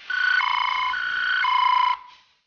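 Electronic two-tone hi-lo siren, switching between a higher and a lower note four times, each held about half a second, then cutting off abruptly.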